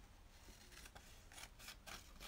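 Faint scissor snips and paper rustling as a page of an old book is cut up for a collage.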